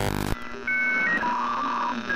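A short burst of noise, then a series of electronic bleeps: steady single tones that hop between a few pitches, each held for a quarter to half a second, like a radio-transmission signal effect.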